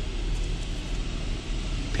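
Truck engine idling, heard inside the cab as a steady low rumble with a hiss over it.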